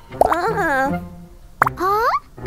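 Cartoon character voices in two short phrases, high-pitched and swooping up and down in pitch, each starting with a sharp pop.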